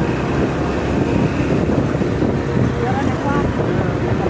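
Motorcycle engine running steadily while riding along, with wind buffeting the microphone.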